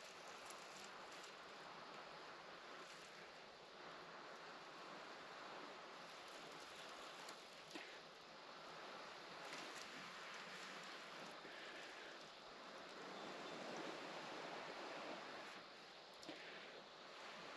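Faint, breathy blowing into a dry-grass tinder bundle holding a glowing char cloth ember, coaxing it to flame, in several slow swells.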